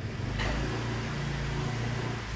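A steady low engine-like motor hum, starting with a short click just under half a second in.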